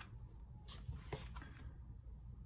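Faint paper handling: a peeled planner sticker being moved and pressed onto a paper planner page, with a few soft rustles and light taps.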